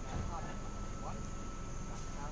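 Steady low hum of a stationary NSW TrainLink V set electric train standing at the platform with its doors open, with faint voices over it.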